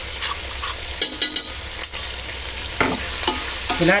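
Raw chicken pieces and onions sizzling in oil in a nonstick pan while a wooden spatula stirs them, with a few sharp scrapes and clicks of utensils against the pan.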